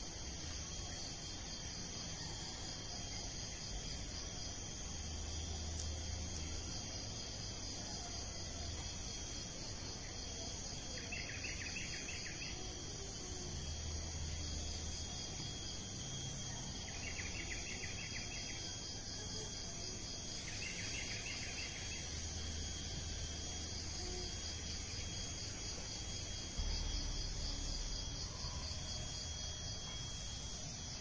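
Steady chorus of insects: a continuous high, fast-pulsing trill. Three shorter, lower trills sound partway through.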